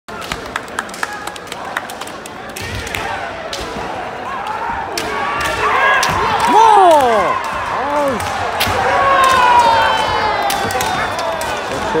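Kendo fencers' kiai shouts, loud drawn-out yells that swoop up and down in pitch and are loudest about six to seven seconds in, over sharp clacks of bamboo shinai and stamping feet on a wooden floor.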